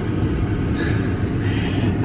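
Car heater blower running steadily inside the car's cabin, a loud even rush over a low rumble.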